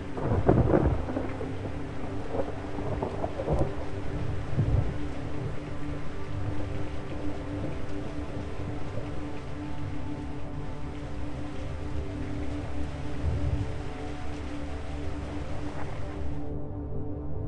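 Thunder rumbling over steady rain, the strongest rumble just after the start and more around four seconds in and near the end, with a held, droning music tone underneath.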